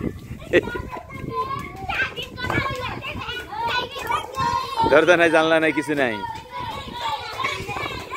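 Several boys shouting and calling out to one another outdoors. About five seconds in comes one loud, drawn-out shout that falls in pitch.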